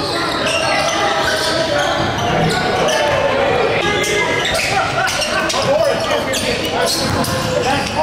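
Basketballs bouncing on a hardwood gym floor during a game, a series of sharp knocks, under a steady hubbub of indistinct voices in a large gym.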